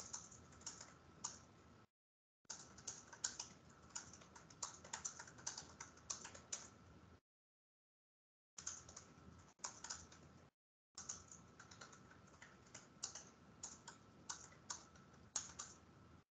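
Computer keyboard typing in irregular runs of keystrokes, with a faint steady tone beneath. The sound cuts out completely between runs, twice for a second or more.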